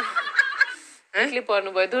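A person's voice talking, with a brief pause about halfway through followed by a run of short syllables.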